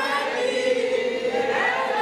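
Voices singing together, holding one long note that slides upward near the end.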